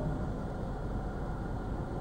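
Steady low rumble of car cabin noise: the car's engine and road noise heard from inside, in slow freeway traffic.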